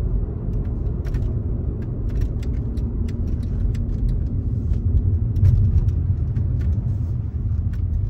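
Steady low rumble of road and engine noise inside a moving car's cabin, with faint, scattered ticks over it.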